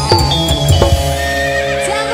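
Live Javanese campursari koplo band playing an instrumental passage between sung lines: kendang drum strokes under ringing gamelan-style metal notes and held keyboard tones.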